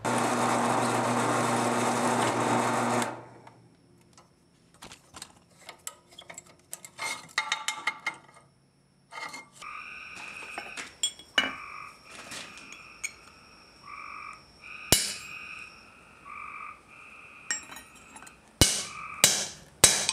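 A loud rushing noise for about the first three seconds that cuts off abruptly, then scattered small metal clicks. In the second half, sharp ringing hammer blows on a steel punch over an anvil: single strikes, then three in quick succession near the end, over repeated short high-pitched calls in the background.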